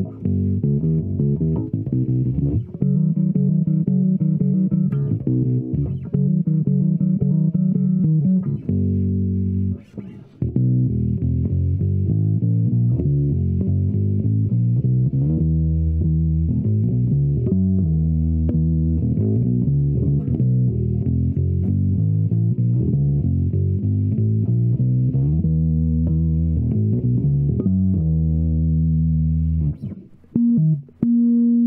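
Epiphone EB-0 short-scale electric bass played through a Zoom G1Xon processor with the tone turned all the way down, giving a deep, dark sound with little treble. Held notes in the first part, a short break about ten seconds in, then a moving bass line.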